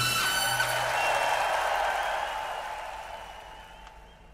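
A live band's final chord ringing out, then studio audience applause, the whole fading steadily away.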